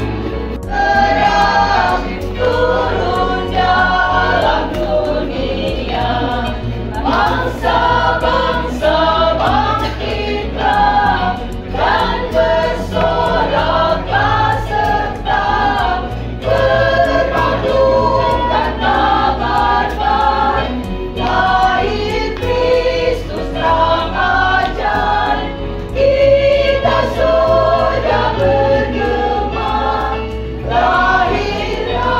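A small women's choir singing a hymn together, phrase after phrase, over a steady low keyboard accompaniment.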